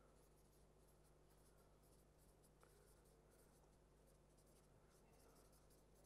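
Faint strokes of a marker writing on a whiteboard, over a low steady room hum; otherwise near silence.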